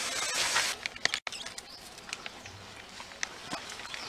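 Water mist hissing steadily from a knapsack sprayer's lance nozzle onto hanging mushroom bags for just under a second, then cutting off. After that only a low background remains, with a few faint scattered clicks.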